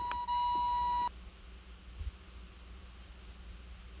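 A steady electronic beep tone that cuts off suddenly about a second in, followed by quiet room tone with a small low thump about two seconds in.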